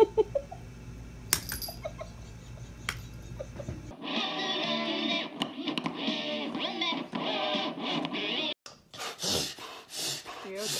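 A faint low steady hum with a few sharp clicks, then, about four seconds in, music with a plucked guitar sound from a vinyl record playing on a turntable, which cuts off suddenly shortly before the end.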